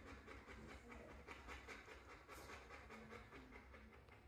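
A livestock guardian dog panting faintly and quickly, about four breaths a second.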